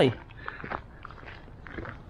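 Footsteps on gravel, a few faint irregular crunches.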